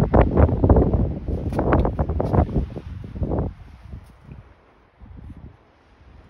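Wind buffeting the microphone, a loud rumbling gust that dies down about three and a half seconds in, leaving only faint noise.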